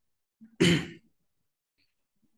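A single short cough, about half a second in.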